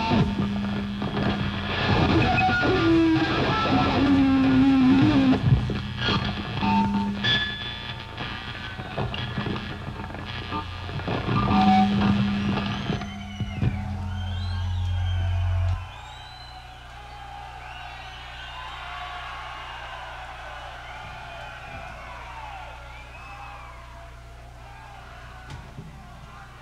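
Heavy metal band playing live, taken from the soundboard: loud electric guitars, bass and drums, then a held low note that cuts off suddenly about two-thirds of the way in. After it come quieter, wavering high sliding guitar tones.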